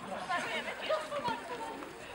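Quiet background chatter of several people talking.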